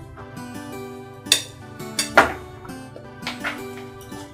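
Background film music with sustained notes, over a few sharp clinks of cutlery against plates and dishes, the loudest about two seconds in.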